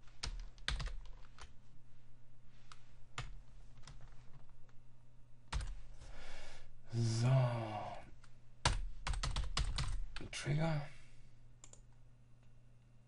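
Typing on a computer keyboard, with keystrokes in irregular clusters. A voice makes short wordless sounds twice, around seven and ten and a half seconds in.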